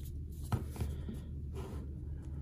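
Quiet handling noise from hands positioning a plastic action figure, with one short click about half a second in, over a low steady room hum.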